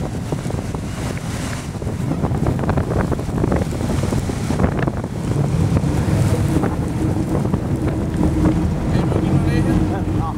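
Strong wind buffeting the microphone on an exposed quay. About halfway through, a steady low engine drone from the approaching ship and tugboat comes in beneath it.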